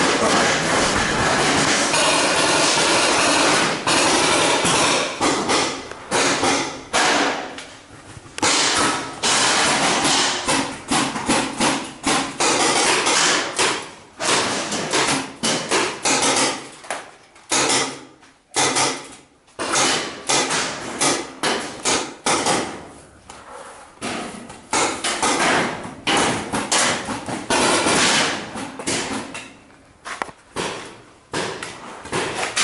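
Paintball markers firing in rapid volleys, with paintballs striking the corrugated sheet-metal walls. A near-continuous barrage for the first few seconds, then bursts of shots with short breaks.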